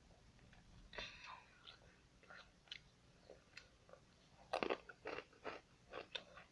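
A person chewing crunchy food close to the microphone: irregular crunches, with a cluster of the loudest ones from about four and a half seconds in.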